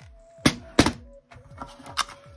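Two sharp knocks about a third of a second apart, and a smaller one near the end, as a metal cash box and its plastic coin tray are handled and set down on a table.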